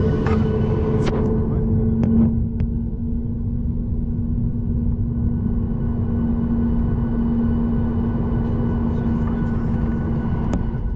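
Boeing 737-800 jet engines at taxi power heard inside the cabin: a steady low rumble with a droning hum, and a few light clicks and knocks from the cabin in the first couple of seconds.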